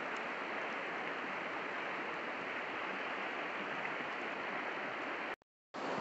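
Steady, even rushing of river water flowing past the bank, broken near the end by a brief total dropout to silence.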